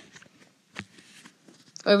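Faint rustling with one short click a little under a second in; a voice starts just before the end.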